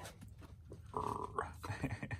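Two dogs play-fighting and mouthing each other, with a short growl about a second in and more brief noises near the end.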